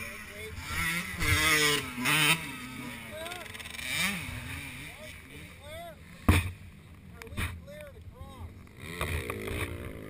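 Dirt bike engines revving up and down, their pitch rising and falling in short arcs, with a sharp knock on the microphone about six seconds in and another a second later.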